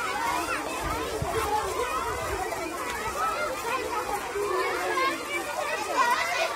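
Many schoolchildren's voices overlapping at once, a steady hubbub of chatter and calls with no single voice standing out.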